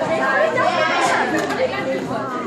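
A group of young people's voices chattering and calling out over one another, with no single voice standing out.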